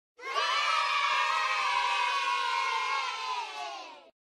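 A crowd of children cheering and shouting together in one long cheer. It starts suddenly, fades over the last half second and cuts off.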